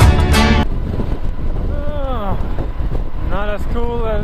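Background music cuts off about half a second in, leaving the steady noise of a KLR 650 motorcycle riding at speed: wind on the microphone over the engine and road. A man's voice starts talking near the end.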